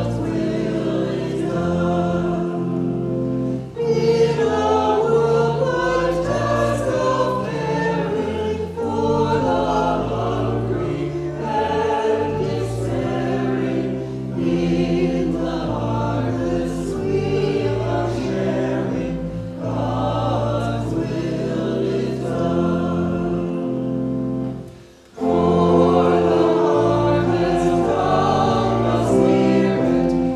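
A choir singing a hymn, with sustained low notes beneath. There is a brief break about 25 seconds in, and then the next verse starts a little louder.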